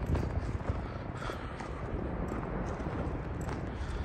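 Footsteps on loose dirt and gravel, walking downhill, over a steady low rumble.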